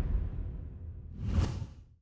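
Whoosh sound effects on an animated title logo: a deep whoosh dies away, then a second, shorter whoosh swells about one and a half seconds in and ends sharply.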